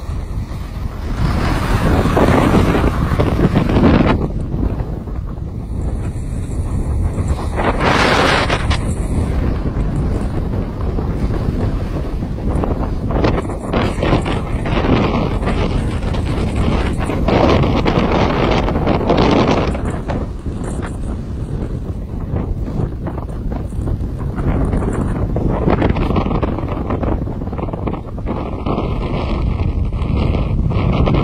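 Wind buffeting the microphone of a moving skier, mixed with the hiss and scrape of skis sliding on the snow of the piste, swelling and easing every few seconds.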